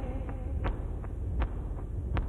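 A sparse stretch of a live band's music between sung lines: a low steady drone with a soft percussive click about every three-quarters of a second, and fainter clicks between.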